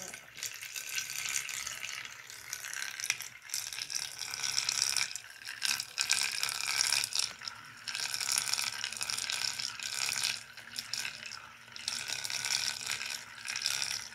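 Water churning and splashing inside a motorized tornado-vortex toy, a rushing hiss that swells and fades with a rattling edge.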